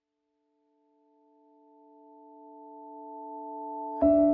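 A sustained chord of four pure, sine-like electronic tones that fades in from silence about a second in and swells steadily louder. It is a soft lead-in to the next piece of lullaby music.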